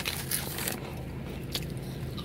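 A crinkly foil-lined potato-chip bag and the chips inside crackling and rustling as a hand rummages in among them, busiest in the first part and then quieter.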